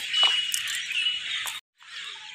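A bird chirping over a steady high outdoor hiss: a thin high whistle near the start and a short rising chirp about a second in. The sound drops out for a moment near the end.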